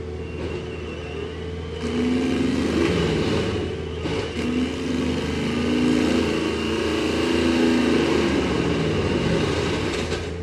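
Compact loader's diesel engine running under load while its mulching head grinds into a tree stump. A steady engine hum with grinding noise over it, louder from about two seconds in, with the engine note rising and falling as it works.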